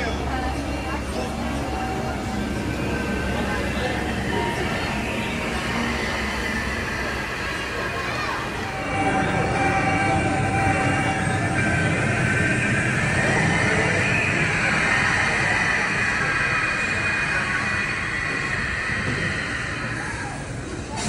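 Steady rumbling roar of a rider sliding on a mat down a long enclosed dry slide tube, louder from about nine seconds in, with high squealing sounds that rise and fall.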